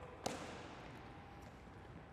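A basketball bouncing once on the hardwood gym floor, a single sharp knock about a quarter second in, followed by faint gym room tone.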